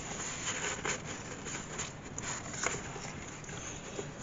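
Faint rustling and light scraping of paper as loose paper cards are handled and slid into a paper pocket of a handmade journal, with a few soft ticks.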